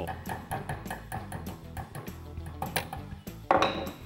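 Background music under light metallic clicks and clinks as the parts of a Winchester 1885 Low Wall rifle are handled while it is taken apart. A louder, short ringing metal clink comes about three and a half seconds in.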